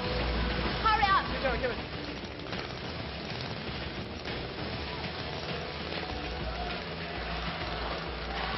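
A brief voice about a second in, then a steady noisy haze under background music.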